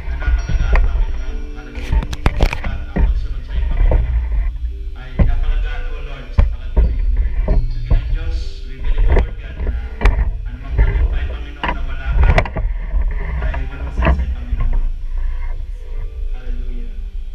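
Live worship band playing through the PA: drum kit strikes over a heavy bass and keyboard, with a voice over the microphone.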